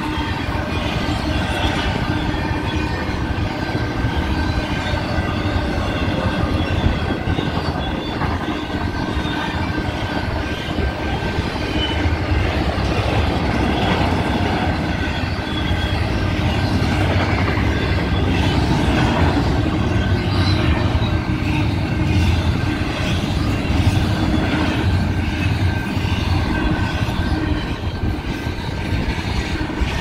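Double-stack container cars of a Union Pacific intermodal freight train rolling steadily past at close range, their wheels clattering and rumbling on the rails, with steady high-pitched squealing tones over the rumble.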